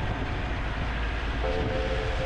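Land Rover 4x4 driving slowly over a muddy, rutted dirt track: a steady low rumble of engine and running noise, with a few faint held tones over it from about one and a half seconds in.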